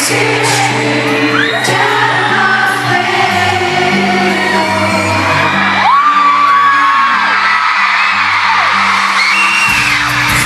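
Live pop song from a boy band: a male voice singing over the band's sustained bass and backing, with fans' high screams and whoops rising over the music.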